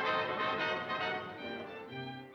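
Orchestral music with brass and strings, growing steadily quieter.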